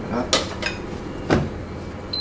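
Two sharp clinks of metal cookware and utensils knocking together, about a third of a second in and again just past a second.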